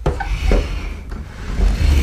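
Plastic body shroud of a foldable boot mobility scooter being handled and lifted off the chassis: rubbing and scraping of plastic with a few short knocks and low thuds.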